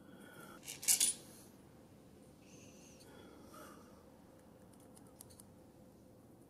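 A couple of short, light clicks about a second in, then fainter clicks and handling noise from the opened metal telescope mount being handled, over quiet room tone.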